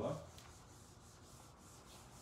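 A dry eraser rubbing quickly back and forth across a whiteboard, a faint run of repeated wiping strokes.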